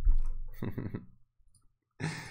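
A man's brief laugh, opening with a low thump, then quiet.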